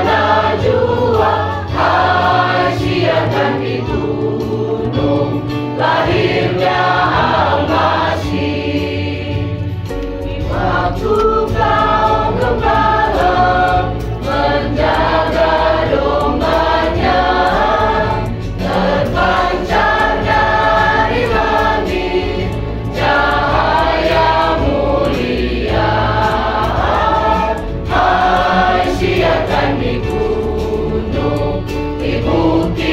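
A mixed group of men and women singing a hymn together in chorus, over steady low bass notes that change every few seconds.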